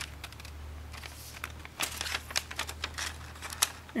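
Stiff foil origami paper being handled and folded into a diagonal fold: scattered crinkles and ticks from the paper, over a low steady hum.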